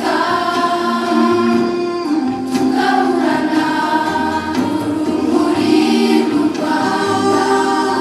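A choir singing a slow song in long held notes over a low, steady accompaniment.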